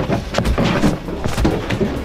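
Garbage can with a person inside tumbling down a hill: a rapid, irregular run of knocks and thumps over a low rumble as it rolls and bangs against the ground.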